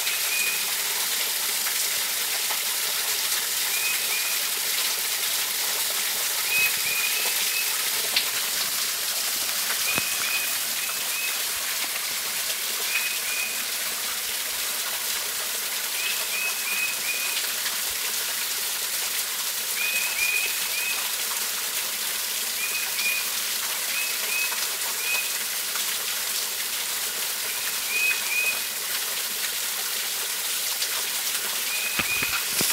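Steady splashing hiss of a small waterfall. Short high chirps in clusters of two to four come every few seconds.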